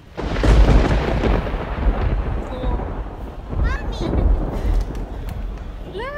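A thunderclap sound effect: a sudden loud crack about a quarter second in, then a deep rolling rumble that dies away over several seconds.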